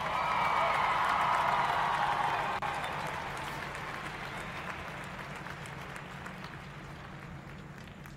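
Audience applause after the band's music stops, swelling over the first couple of seconds and then slowly dying away.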